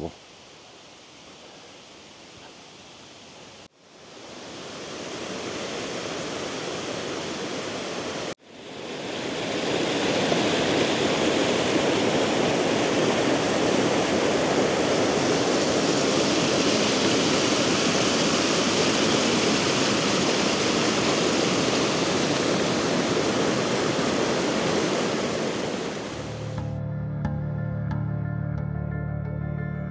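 Faint steady hiss at first, then a cascading creek rushing white over mossy boulders, coming in at a cut and stepping louder at a second cut a few seconds later, then holding steady and full. Soft background music begins near the end.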